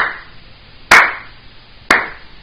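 One person clapping slowly: three sharp hand claps about a second apart, a mocking slow clap.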